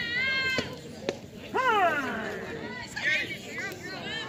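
High-pitched, drawn-out shouts and cheers, several calls in a row, with a single sharp pop about a second in, typical of a softball pitch smacking into the catcher's mitt.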